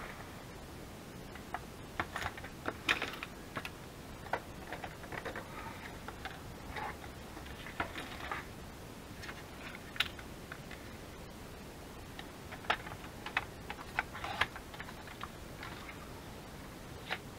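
Scattered light clicks and taps of paper, a metal ruler and craft tools being handled on a work table around a sliding-blade paper trimmer, coming more often near the end.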